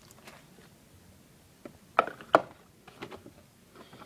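Small clicks and knocks of an iPad mini's charger, cable and packaging being handled, with two sharp clicks close together about two seconds in.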